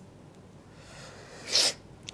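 A low, quiet room, then about one and a half seconds in a single short, sharp, breathy sneeze-like burst from a man's mouth and nose.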